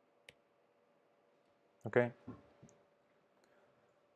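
A single faint click from working a computer, about a quarter of a second in. A man then asks a short "ok?" about two seconds in, over a faint steady room hum.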